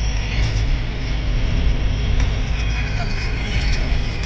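Steady low rumble of a car's engine and tyres on the road, heard from inside the cabin while driving at speed, with a voice over it.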